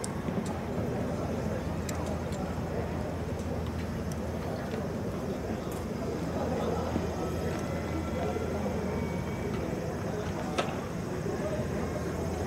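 Outdoor stadium ambience: a steady low hum under indistinct distant voices, with a few faint clicks and one sharper tick about ten and a half seconds in.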